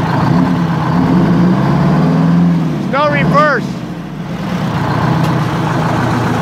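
Walter RDUL truck's eight-cylinder diesel engine running on seven cylinders, one dead because the fuel lines were left off its injector; the engine note rises a little over the first couple of seconds, then settles. A brief voice cuts in about three seconds in.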